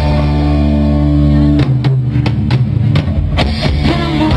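Live rock band playing amplified: electric guitars and bass hold a sustained chord for about a second and a half, then the drum kit comes in with a run of hits.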